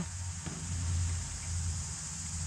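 Outdoor background: a steady high drone of insects over a low, steady rumble.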